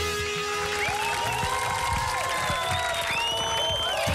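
A Latin band playing live music at a break in the song: the low drum and bass beat drops out while sliding, gliding tones carry on above, with some applause mixed in.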